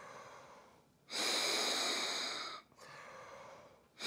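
Breath blown by mouth into the fan inlet of a 3D-printed Diamond Bowl part-cooling duct: one louder rush of air lasting about a second and a half in the middle, with fainter breaths before and after. The air passes through with hardly any resistance.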